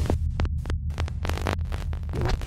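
Glitchy electronic outro sound design: a deep, steady throbbing hum broken by rapid short crackles and clicks.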